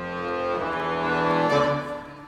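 Two concert accordions playing together, holding full sustained chords that swell steadily louder to a peak about one and a half seconds in, then break off and drop to quieter playing.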